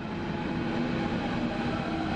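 Berlin S-Bahn class 481 electric train approaching through the tunnel station, its running noise with a steady hum growing gradually louder as it comes in.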